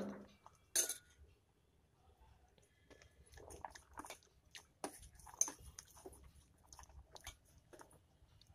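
Steel ladle stirring thick, foaming milk in a stainless steel pot, scraping and clinking faintly against the pot's sides and bottom in short, irregular strokes, with one sharper click about a second in.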